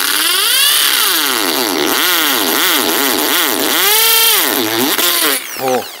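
Reaim 500 W corded hammer drill boring a masonry bit into a cast-concrete paver, its motor whine repeatedly sagging and recovering in pitch under load. It stops about five seconds in.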